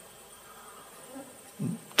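A pause in a man's lecture, filled by a faint, steady buzzing hum in the background. Near the end there is a brief low vocal sound from the speaker.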